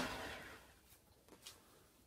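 Craftsman 3/4 hp 6" x 9" belt/disc sander coasting down after being switched off, its belt noise fading away within about half a second, then near silence with a faint tick.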